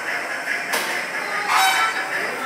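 Bird-park aviary ambience with other birds calling throughout, a short click under a second in, and one loud call near the end that stands out above everything else.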